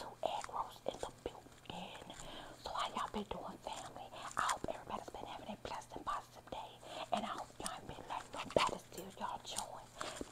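A woman whispering close to the microphone, with small sharp clicks between the words.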